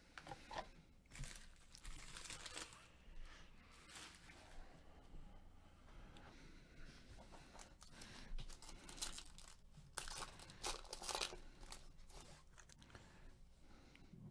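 Foil trading-card pack wrappers of 2019-20 Panini Prizm basketball retail packs crinkling and tearing as a pack is ripped open, faint and irregular, with a louder stretch of crinkling about ten seconds in.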